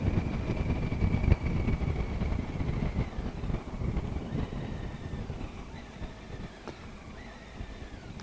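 Triumph Tiger 800 three-cylinder motorcycle running along a lane, its low engine rumble mixed with wind noise on the rider's microphone. The sound fades away over the second half as the bike slows for a junction.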